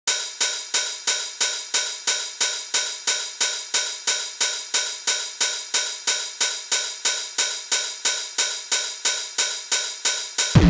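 Hardcore techno intro: a single bright metallic percussion hit, hi-hat-like, repeating evenly about three times a second, with no kick drum or bass under it.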